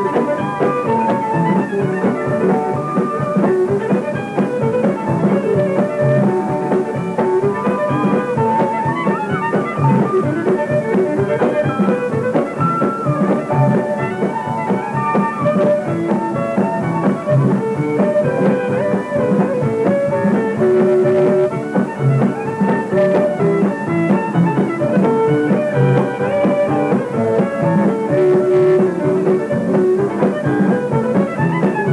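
A western swing band playing an old-time fiddle tune live, the fiddle leading over guitar and bass. It is heard on an old 1958 radio-broadcast recording with little treble.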